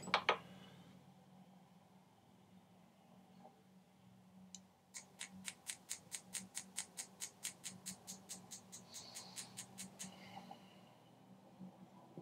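Light, rapid taps on a pin punch held in a copper sheet, about six a second for some five seconds, starting about halfway through after a single tap. The punch is widening a small conical recess for a silver wire dot inlay.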